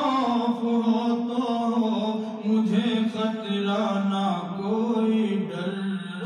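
A man's voice chanting a naat, an Urdu devotional poem, without accompaniment, drawing out long held notes that step and slide slowly between pitches.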